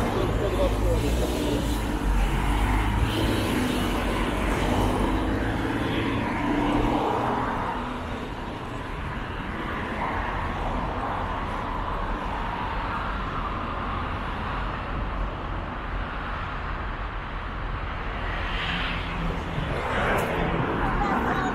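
City street traffic going by, cars and engines rumbling, heaviest for the first several seconds and then easing to a steadier hum. Indistinct voices of passers-by sound over it.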